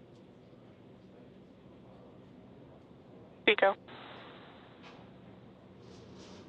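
Faint steady hiss of an open radio comm loop, broken about three and a half seconds in by one short clipped callout word, "Stage", from launch control.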